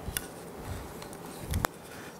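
Faint room tone, then a single sharp click about three-quarters of the way through as a small square and a plywood piece are picked up off the workbench.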